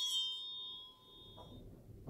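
A hand-held school bell ringing out after being shaken, its steady high tones fading away over the first second and a half. A faint knock comes near the end.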